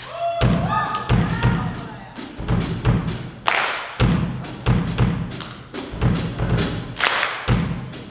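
PDP drum kit played in a steady beat: regular bass drum thuds with sharp cymbal and snare strikes, and two louder crashes at about three and a half and seven seconds in.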